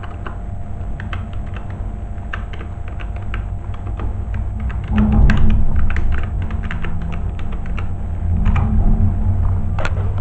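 Typing on a computer keyboard: irregular key clicks. A low rumble runs underneath and gets louder about halfway through.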